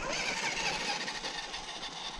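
Radio-controlled rock racer truck driving over a gravel road: its motor running and its tyres crunching on the loose gravel.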